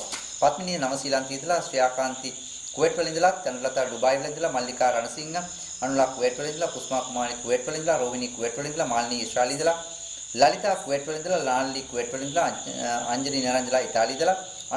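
A steady, high-pitched chorus of crickets chirping, with a faint pulsing in it, under a man's voice reading aloud, which is the loudest sound.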